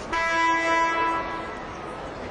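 Basketball arena horn sounding once: a loud, steady buzz lasting about a second and a quarter.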